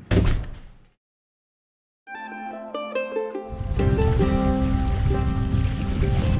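A loud thump at the very start that dies away within a second, then a second of silence. A song's intro follows: plucked string notes, with deeper instruments joining about a second and a half later.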